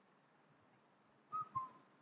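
Short two-note computer notification chime from the Microsoft Teams app, a higher note followed by a slightly lower one, about a second and a half in; otherwise near quiet.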